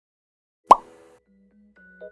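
A single sharp cartoon-style pop sound effect, followed by soft background music of mallet-like notes.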